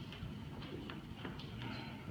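A handful of light, irregular clicks and knocks in a quiet room.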